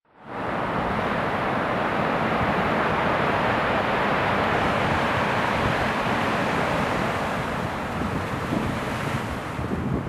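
Surf breaking and washing over a stony, rocky shore, with wind blowing on the microphone: a steady, loud wash of noise that starts abruptly.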